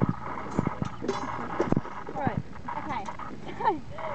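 Tent poles clacking and knocking together as they are handled and fitted into place, a handful of sharp clicks in the first two seconds.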